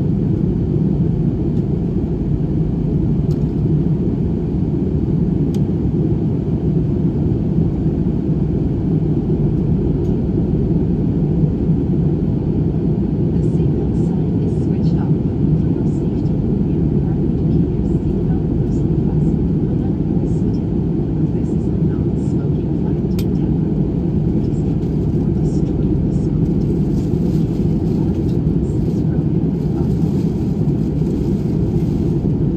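Steady airliner cabin noise from a window seat of an Airbus A320-family jet in flight: a constant deep rumble of engines and airflow that does not change.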